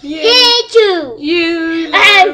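A girl singing loudly in a strained, playful voice: a few held notes, the first sliding up and then down, followed by a steady held note.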